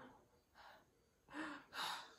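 A woman's breathy gasps of excitement, four in quick succession, faint at first and louder in the second half.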